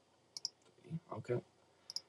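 Computer mouse clicking: two quick clicks about a third of a second in and two more near the end, with a brief low vocal murmur in between.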